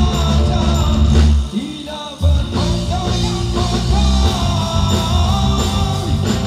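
Live rock band with a male vocalist singing into a microphone over electric guitar. The band drops out briefly about a second and a half in, then comes straight back in.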